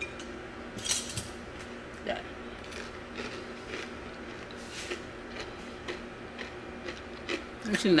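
A few scattered light clicks and crackles as a piece of crispy fried chicken is handled on a plate, its crust breaking off, over a faint steady room hum.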